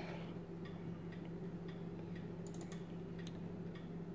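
Faint computer mouse clicks, a scatter of light ticks as folders are opened, over a steady low electrical hum.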